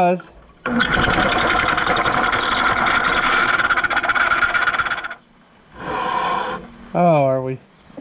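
Electric drill running a twist bit in a hole in a hard steel plow beam for about four seconds, a steady whine with the noise of cutting, then a second short burst. The bit is struggling to cut out a ridge left in the hole.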